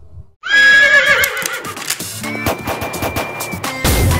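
A horse whinny sound effect breaks in suddenly about half a second in, wavering and fading over a second or so, leading into intro music with held tones and a deep hit near the end.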